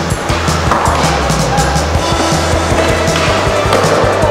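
Skateboard wheels rolling and carving on concrete ramps, heard under loud music with a steady beat.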